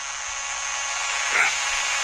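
Steady hiss that grows slowly louder, with one short voice sound about one and a half seconds in, in a pause between a man's phrases.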